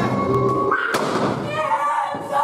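A painted stone-wall stage flat topples onto the wooden floor with one sharp thud about a second in, over music and voices.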